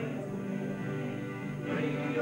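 Live band playing. The male lead voice pauses between lines while the instruments carry on, then the singing comes back in near the end.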